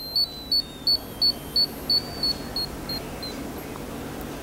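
SDL90ec laser hair removal unit's audible ready-to-fire warning beeper giving short high beeps about three a second, growing fainter and dying out about three seconds in, as the switched-off unit's power discharges internally.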